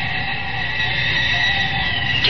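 A steady, high electronic drone of several held tones with a fainter wavering tone beneath it, the sustained background bed of an old-time radio drama.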